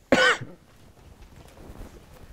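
A person coughs once, a short single burst right at the start.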